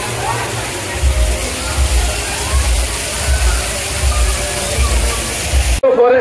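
Water rushing over rocks into a bathing tank, with a crowd's faint voices and a low thumping beat of music underneath. Near the end it cuts abruptly to closer talk.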